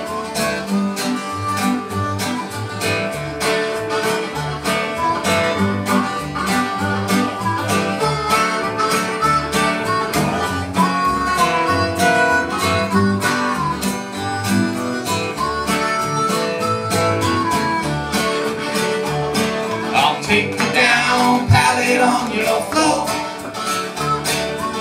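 Bluegrass instrumental break: a harmonica holds long notes on the melody over strummed acoustic guitars and a plucked upright bass.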